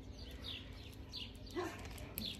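Faint bird chirps: short, high calls that fall in pitch, repeated every half second or so, with a short lower call about one and a half seconds in.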